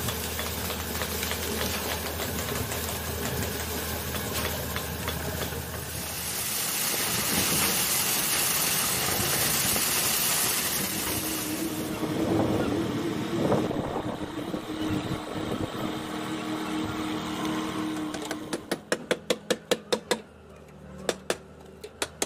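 Concrete-pouring machinery on a building site: a steady engine hum, then several seconds of loud hiss, then a steady mid-pitched drone from about twelve seconds in. Near the end comes a quick run of about eight sharp knocks, roughly four a second, and a couple more after a short pause.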